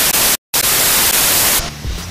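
Loud TV-static hiss, a white-noise transition effect, broken by a brief dead dropout under half a second in and stopping shortly before the end.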